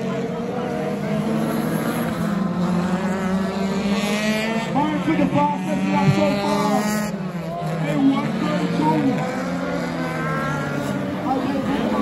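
Race cars' engines running and revving around the circuit, heard from afar, with a climbing engine note in the middle. Commentary over the public address runs underneath.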